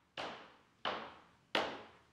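Intro sting of evenly spaced percussive hits, about one every 0.7 seconds. Each hit fades out quickly, and each is louder than the one before.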